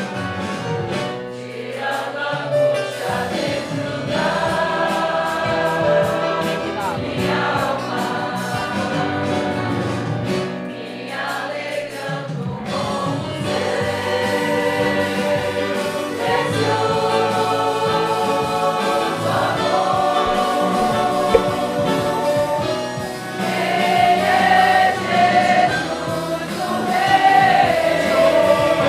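A church congregation singing a hymn together, with a small ensemble of violins and acoustic guitars playing along.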